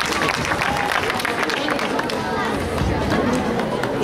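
Audience clapping, mixed with crowd chatter and scattered voices.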